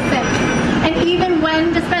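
A woman speaking over city street traffic noise, with a vehicle passing in the first second and a briefly falling whine.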